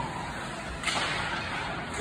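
A hockey stick cracks sharply against the puck once, a little under a second in, over the steady background noise of the ice rink.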